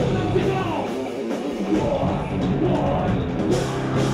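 A live heavy metal band playing, with electric guitar and a drum kit going without a break.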